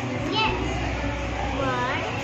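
Children's voices chattering in a classroom, a few short high-pitched calls over a steady low hum.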